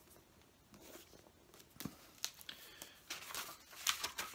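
Paperback book being handled, its cover and pages rustling faintly with a few small clicks as it is turned over and opened.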